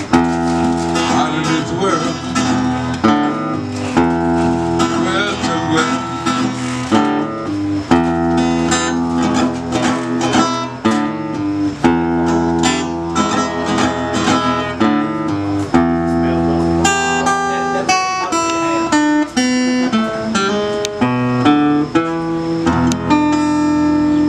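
Solo acoustic guitar playing a blues instrumental passage: plucked single notes and short runs over ringing low bass notes, without a break.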